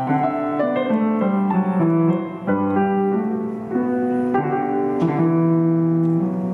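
Yamaha CF II concert grand piano played solo: a classical piece with a melody over sustained chords, the notes changing several times a second.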